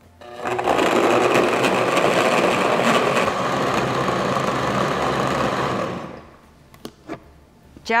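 Countertop blender running steadily, puréeing roasted tomatoes, onion and jalapeño into salsa. It starts about half a second in and winds down about six seconds in.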